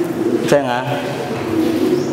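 A man's voice through a microphone: a short spoken sound about half a second in, over a steady held tone.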